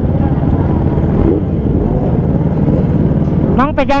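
Kawasaki Ninja H2's supercharged inline-four idling steadily, with a dense low rumble.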